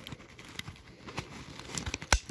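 Handling of a fabric first aid kit bag as its clips are fastened: scattered light clicks and rustling, a little louder near the end.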